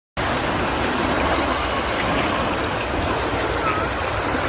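Small waves washing up a sandy beach: a steady rush of surf.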